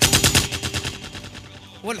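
A sudden burst of rapid automatic gunfire, about ten shots a second, loudest at first and fading away over about a second and a half.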